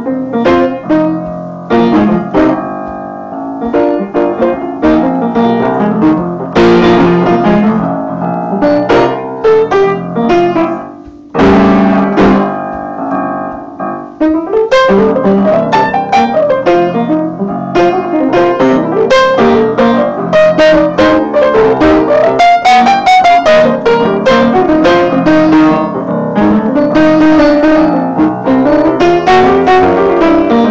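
Solo piano playing a 12-bar blues in a jazzy style, struck chords and melody lines. About eleven seconds in there is a loud chord, and the playing grows busier after that.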